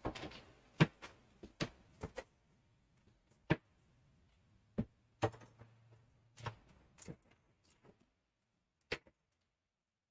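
Scattered light clicks and knocks, about ten spread over the stretch, as small items are picked up and set down on a workbench.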